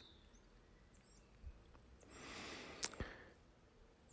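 Near silence: faint room tone, with a soft swell of noise about two seconds in and a single click just before the three-second mark.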